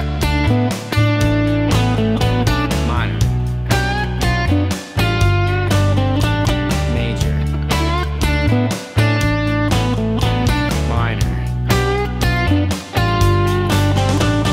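Electric guitar playing a lead lick in major pentatonic, followed by a similar lick in minor pentatonic, over a backing jam track with steady bass notes. Several notes are bent up in pitch.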